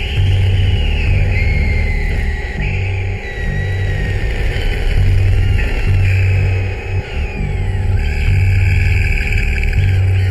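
Electronic music track: a heavy bass line pulsing in repeating blocks under high synth tones that glide slowly downward in pitch.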